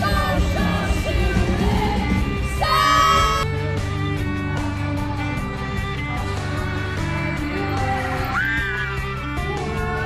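Pop music with a lead singer over steady bass and band, and people yelling and singing along; a loud held high note about three seconds in.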